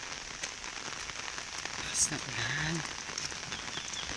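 Steady rain falling, with scattered single drop taps through it and one louder tap about two seconds in. A brief wordless voice sounds just after that tap.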